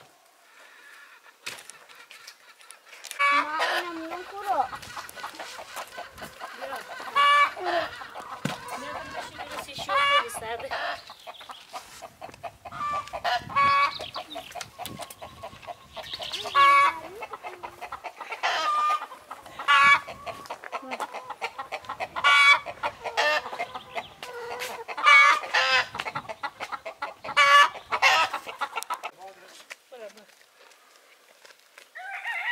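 Chickens clucking and calling, with a rooster crowing. The loud pitched calls come one after another every couple of seconds.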